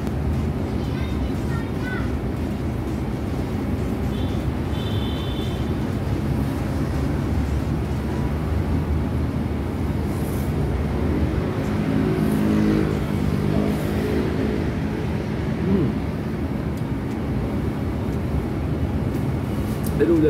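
A steady low background rumble of room or traffic noise runs throughout, with noodles being slurped and a faint murmur of voice around twelve seconds in. A brief high tone sounds about four seconds in.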